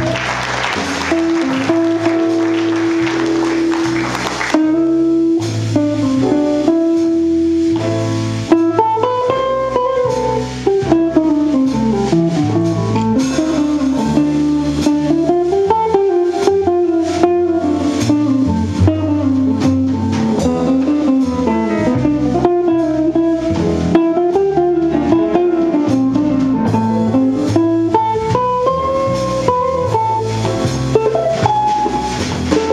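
A jazz combo playing live, with double bass and drums. For the first several seconds a saxophone plays long held notes over a bright cymbal wash. Then an electric Gibson L-4 archtop guitar takes a solo of quick single-note runs that rise and fall.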